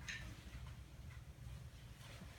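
Faint handling of a soft fabric stretcher as it is folded in half: a couple of small soft ticks over a low steady hum.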